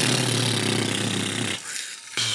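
A man making a mouth engine noise, a steady buzzing growl, as he drives a toy car along the mud-coated guitar neck; it lasts about a second and a half, then stops.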